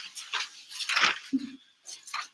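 Paper rustling as the thin pages of a Bible are leafed through, in several short noisy bursts.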